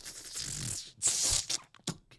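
A man laughing under his breath: breathy, hissing exhales in short bursts, with a few quick sharp ones near the end.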